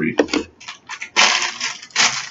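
Small hard plastic packaging being handled, with a loud, short rustling clatter just over a second in.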